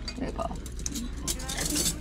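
Quiet voices at the table with light clinks of metal spoons against plates and a serving pan, a few clinks coming close together in the second half.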